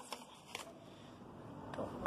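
Faint rustling and light taps of a hand handling a white cardboard tablet box and its paper insert, with a couple of small clicks in the first half second.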